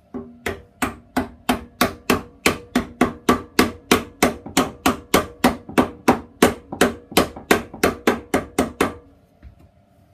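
Wooden mallet driving a round fitting into the dust port of a bandsaw's base, in steady, even blows at about three a second that stop about nine seconds in.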